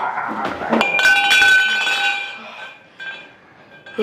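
Metal pole clanging: a couple of knocks, then a loud metallic clang about a second in that rings on and fades away over about two seconds.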